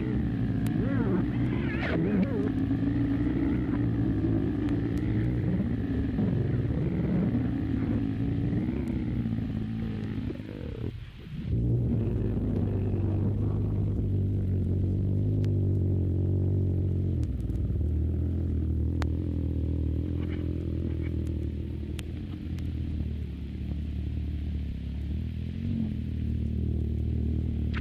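Experimental noise-drone music: a dense, low rumbling drone with wavering tones above it. It drops away briefly about eleven seconds in, then comes back as a steadier low drone.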